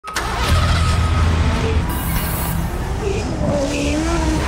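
Car engine sound effects, a steady deep rumble, mixed with music; a whine rising slightly in pitch comes in near the end.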